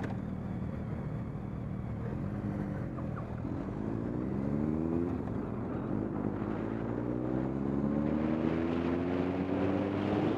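Sport motorcycle's engine heard from the rider's seat, pulling harder so its pitch climbs, drops once about halfway as it shifts up a gear, then climbs again. Wind rush grows louder as the speed builds.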